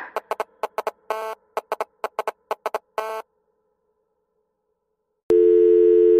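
An electronic dance track's outro cut into a run of short, stuttering synth blips, two of them held a little longer. After about two seconds of silence, a steady telephone-line tone sounds loudly near the end.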